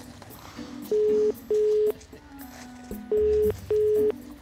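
Telephone ringing tone of a call being placed, British double-ring pattern: two double rings, each a pair of short steady beeps, about a second apart, with faint background music underneath.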